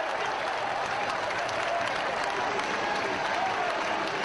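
Football crowd celebrating a goal: many people clapping and cheering at once, a steady wash of applause with the shouting of massed voices.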